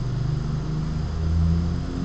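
A steady low hum with an engine-like character, swelling slightly in the middle.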